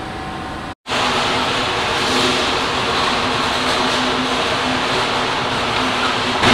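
Steady factory machinery noise with a steady low hum running through it. The sound drops out completely for a moment just before a second in, then resumes unchanged.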